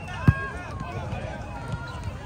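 A volleyball struck once, a sharp slap about a quarter second in as it is dug up off a low lunge, over players and spectators calling out across the court.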